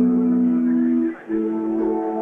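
Wurlitzer electric piano playing slow held chords. The first chord is cut off a little past a second in, and a new one is struck at once.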